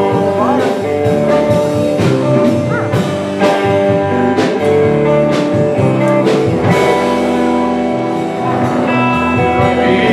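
Live country band playing an instrumental break between verses: guitar over a steady beat of about two strokes a second.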